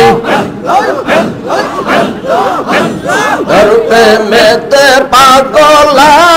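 A large crowd of men chanting loudly together in a Sufi zikir (dhikr), many voices overlapping and sliding in pitch. About three and a half seconds in, a lead singer's voice over a microphone returns with long held sung notes.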